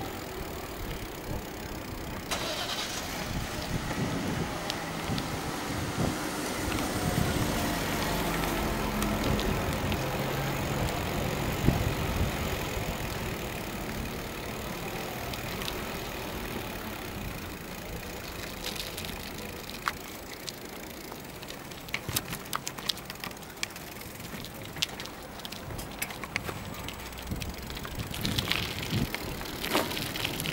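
Wind and tyre noise from a bicycle ride on a town street, with a car engine running close by through the middle stretch. Over the last ten seconds the ride goes onto rough gravel, with many scattered clicks and rattles.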